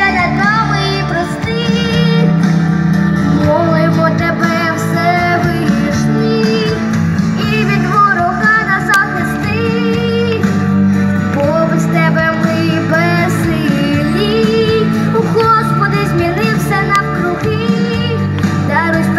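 A young girl singing a song into a microphone over instrumental accompaniment, amplified through a stage loudspeaker. Her held notes waver with vibrato.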